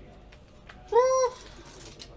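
A single short, high-pitched, meow-like squeal about a second in, rising then falling in pitch.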